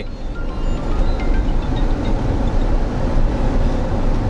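Steady road and engine noise inside the cabin of a moving car, a low rumble with no break.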